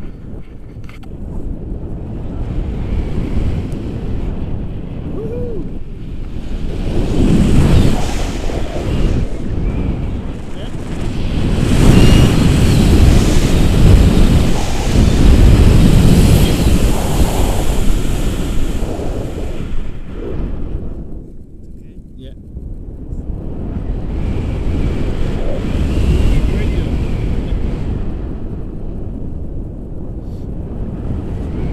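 Wind rushing over the camera microphone of a tandem paraglider in flight, swelling and easing in several gusts, with a short lull about two thirds of the way through.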